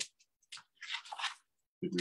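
Paper rustling as a paper photo template is slid across cardstock: a brief scrape about half a second in, then a longer one.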